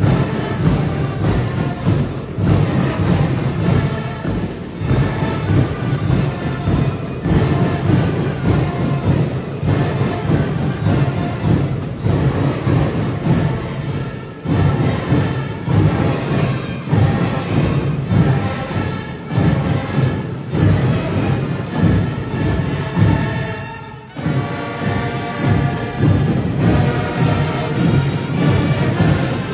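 School marching band playing: snare and bass drums driving a steady beat under brass. There is a short drop near the end, after which held notes come in.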